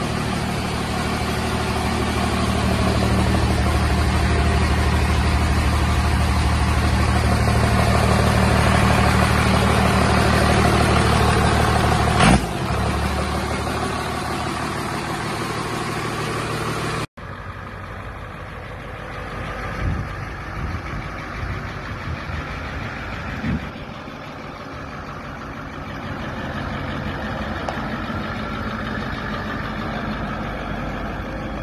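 Turbo-diesel 12-valve Cummins inline-six idling steadily, with one sudden sharp peak about twelve seconds in. After a cut a little past halfway, a different engine is heard running more quietly, with a few knocks.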